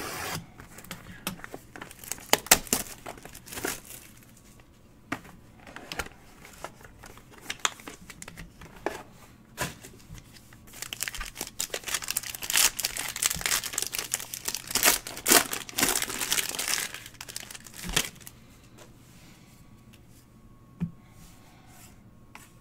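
Trading-card box being opened with scattered taps and rustles, then a few seconds of dense crinkling and tearing about halfway through as the pack's wrapper is ripped open.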